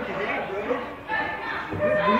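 Indistinct chatter of several people talking at once, in a large indoor hall.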